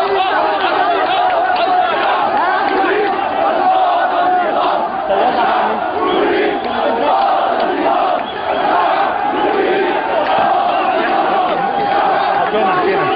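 A large crowd of men shouting together as they march, loud and unbroken.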